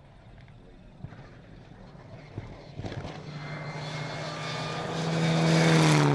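Rally car engine approaching at speed, growing steadily louder, with a steady engine note.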